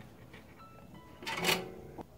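Quiet, with one brief rustle of handling about a second and a half in, as the transformer assembly is set down on the cardboard work surface.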